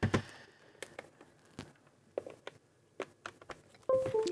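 Faint clicks and taps of a FrSky Horus X10S Express radio-control transmitter being handled while a USB cable is plugged into it. Just before the end the transmitter gives a short electronic beep.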